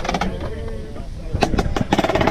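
Indistinct talk from people nearby, with a few sharp knocks about one and a half seconds in.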